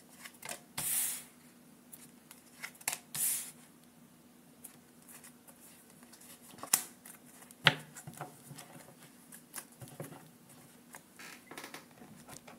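Tarot cards shuffled by hand: short papery riffles and slides with scattered taps and clicks, the longest hissy bursts about a second and three seconds in, and sharp snaps near the middle. Near the end, cards are set down on a wooden table.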